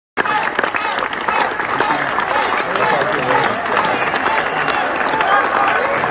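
Crowd applauding: dense, steady clapping with voices calling and chattering over it.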